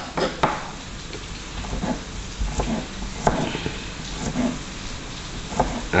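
Kitchen knife tapping on a cutting board while mincing garlic cloves very finely: a handful of sharp, irregularly spaced knocks over a steady background hiss.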